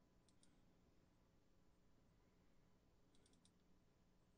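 Near silence: room tone with a low steady hum and a few faint, sharp little clicks, a pair about a third of a second in and a quick run of four just after three seconds.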